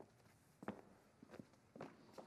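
A few faint footsteps on a stage floor, about four soft steps at an uneven pace.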